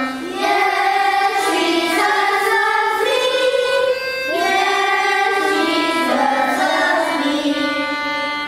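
A choir singing sustained, melodic phrases, with brief breaths between phrases near the start and about halfway through.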